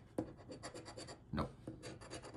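A large metal coin scraping the coating off a paper scratch-off lottery ticket in fast, even back-and-forth strokes, many to the second.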